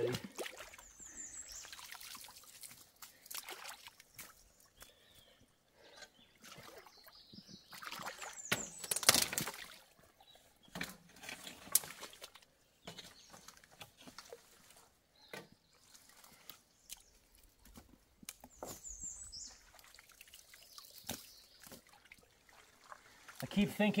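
Shallow water sloshing and splashing around wading boots as sticks and mud from a beaver dam are pulled out of a culvert, with a trickle of water flowing through the pipe and occasional knocks of wood. One loud splash comes about nine seconds in.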